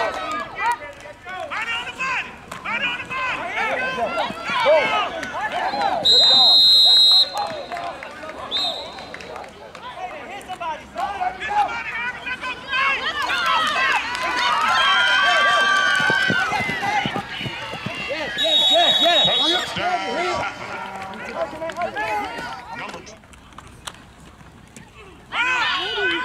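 A referee's whistle blows two steady blasts of about a second each, the first a quarter of the way in and the loudest sound, the second about three-quarters through, signalling the play dead. Between them many voices shout and call from the sidelines.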